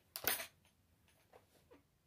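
Handling noise from a plastic-and-metal air rifle: a short clatter near the start as it is moved and gripped, then a couple of faint clicks.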